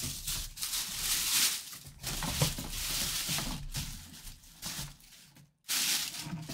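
A cardboard helmet box and a plastic-bagged helmet being handled: irregular rustling and scraping, with a short quiet gap near the end.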